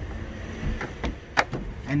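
A sharp knock a little under halfway through, with a couple of fainter knocks before it, as a new car battery is handled and set into its tray in the engine bay, over a low steady rumble.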